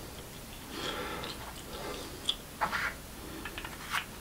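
Small clicks and taps of a wristwatch case and hand tools being handled on a workbench, with several sharp clicks in the second half and the loudest just before the end.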